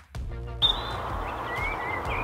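Birds chirping and whistling over steady outdoor background noise, starting about half a second in after a brief snatch of music.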